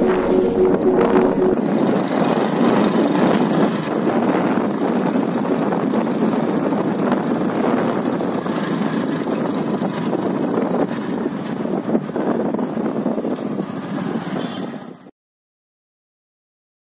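Riding noise from a vehicle moving along a road: a steady rush of wind and engine, cutting off suddenly near the end.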